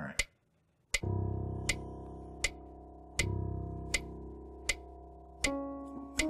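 Digital piano playing soft low chords, one struck about a second in and another about three seconds in, each held and fading, with a few higher notes entering near the end. A metronome clicks steadily underneath at about 80 beats a minute.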